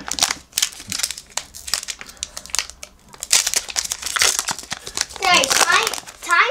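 Foil wrapper of an Upper Deck hockey card pack crinkling and tearing as it is pulled open by hand, in quick irregular crackles.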